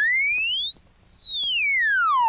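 Cartoon whistle sound effect: a single pure tone that glides smoothly up to a high peak about a second in, then slides back down. It is the classic cue for something flung up into the air and falling back.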